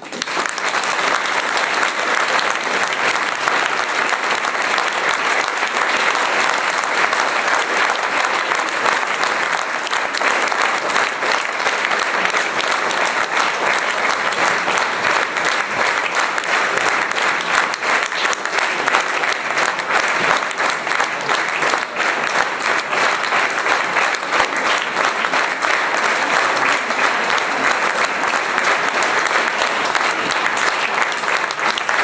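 A large concert audience applauding, breaking out all at once as the piece ends and holding steady as dense, full clapping.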